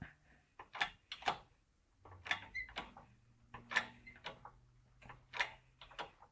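Light, sharp clicks and pops at uneven intervals, about ten in all, as a welded steel test plate bends under a hydraulic shop press and the mill scale cracks and pops off its surface. A faint steady low hum sets in about two seconds in.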